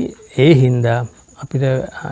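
A man speaking in Sinhala in a sermon, in short phrases with brief pauses, with a faint steady high-pitched tone underneath.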